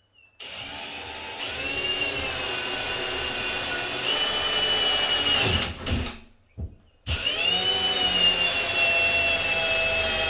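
AEG cordless drill running with its bit boring into drywall, in two long runs: the first stops just before the middle, a short blip of the trigger follows, then the second run starts about a second later and carries on.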